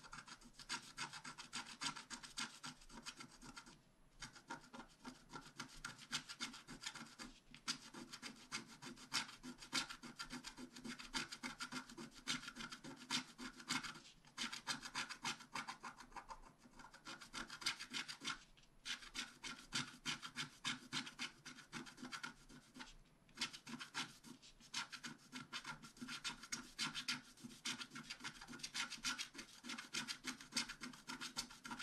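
Wooden stylus scratching the black coating off a scratch-art sheet in quick short strokes, with brief pauses every few seconds.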